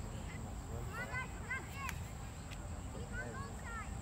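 Faint, distant high-pitched voices calling out across an open field, in two short bursts about a second in and around three seconds, over a steady low outdoor rumble.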